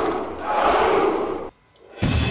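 A crowd of men shouting a battle cry in unison. One shout ends just after the start, a second runs until about one and a half seconds in, and then the sound cuts off suddenly.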